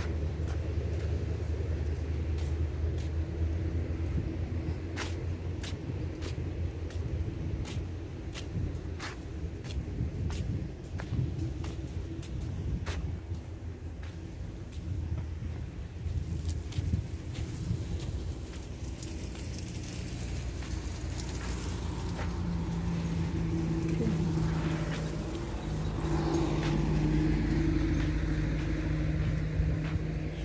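Outdoor traffic rumble, with scattered light clicks in the first half. About twenty seconds in, a steady low engine hum joins in.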